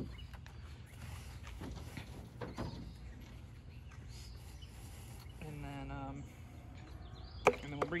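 Quiet handling noises as a rope is fed over the open door frame of a minivan, over steady outdoor background noise. A man's voice gives one short hum about two-thirds of the way in, and there is a sharp knock near the end.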